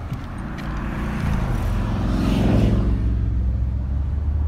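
Car engine and road noise heard from inside the cabin while driving, a low rumble that grows louder through the middle of the clip.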